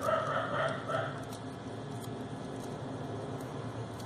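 Faint rustling of floral tape and crepe paper being wound around a wire stem, over a steady low room background. A brief faint voice-like sound near the start.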